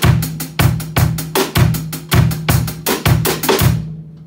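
Drum kit groove: quick, even hi-hat strokes over bass drum hits and rim shots on the backbeat, stopping abruptly just before the end.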